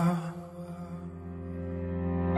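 Soft instrumental break in a slow pop ballad: after the last sung note fades, quiet held notes carry on and swell back up near the end.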